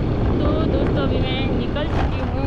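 Wind buffeting the camera microphone on a moving scooter, a loud steady rumble with the scooter running underneath it, while a woman talks over it.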